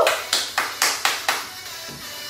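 Background workout music with a quick run of five or six sharp clap-like hits, about four a second, fading out about a second and a half in.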